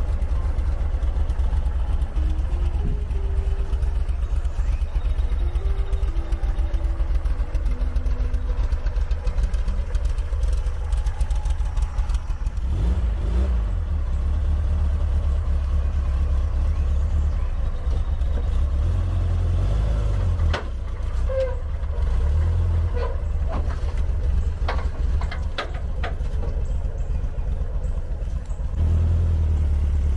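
The air-cooled flat-four engine of a 1978 VW Super Beetle running with a steady low rumble. The rumble gets louder near the end.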